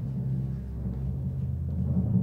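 Background film score: low, sustained music with a rolling drum underneath.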